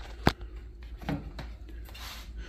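A sharp plastic click, then faint rubbing and knocking, as the plastic brew funnel of a BUNN coffee maker is picked up and handled. A low steady hum runs underneath.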